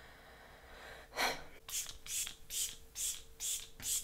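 Mini pump bottle of Milk Makeup Hydro Grip Set + Refresh setting spray being misted onto the face. The spraying starts about a second in and repeats as a string of short hissing spritzes, about two to three a second.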